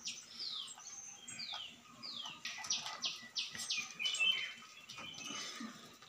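Small birds chirping: a quick run of short, high chirps, each sliding down in pitch, repeated many times.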